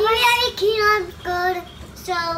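A young girl singing three short held notes, with brief gaps between them.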